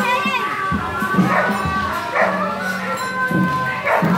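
Street procession sound: a crowd and children's voices mixed with music that has long held notes.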